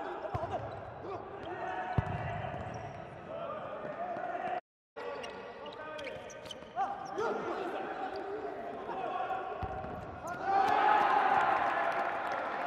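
Indoor futsal match sound in a reverberant hall: the ball being kicked and bouncing on the court, with a few sharp knocks, under continuous shouting from players and crowd. The sound cuts out briefly near the middle. The voices swell louder near the end as the ball heads toward the goal.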